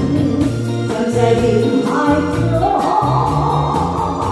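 Band music from a slow Taiwanese pop ballad, without sung words: a drum kit keeps a steady beat with regular cymbal strokes over a bass line. A held melody note comes in about two seconds in.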